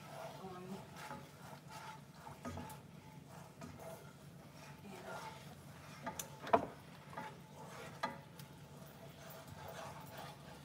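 A wooden utensil stirring in a frying pan on the stove: light scrapes and knocks, with one sharp clack about six and a half seconds in and a smaller one about a second later.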